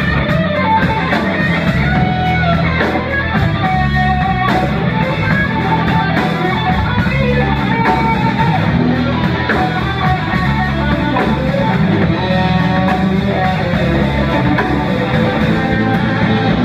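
Live rock band playing an instrumental passage without vocals: electric guitar and electric bass over a drum kit, loud and steady throughout.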